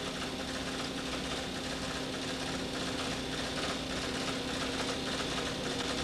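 Paper tape punch running, punching a frame-count and exposure-cue tape for a film printer: a steady, fast mechanical chatter over a constant hum.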